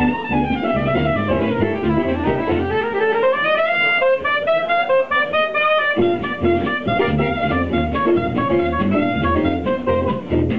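Live swing band: a soprano saxophone plays a solo line that falls and then climbs while the rhythm section drops out for a few seconds. About six seconds in, the acoustic guitar and double bass come back in with a steady swing beat under the saxophone.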